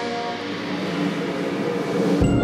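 A processional brass band plays a slow Guatemalan procession march in sustained chords. The ring of an earlier cymbal crash fades under it.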